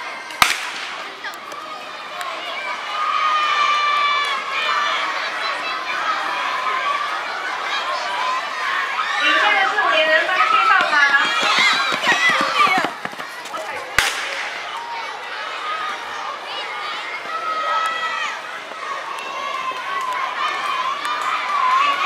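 A starting pistol fires once about half a second in, and again about 14 seconds in, each setting off a sprint heat. Between the shots a crowd of children shouts and cheers, rising to its loudest as the runners near the finish.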